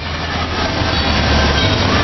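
Carousel running: a steady mechanical rumble with a low hum, building over the first second.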